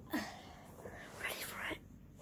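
A person whispering close to the microphone, in short breathy bursts.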